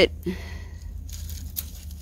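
A thorny briar stem being handled and pulled aside, rustling and scraping with small crackles, busiest about a second in, over a steady low rumble.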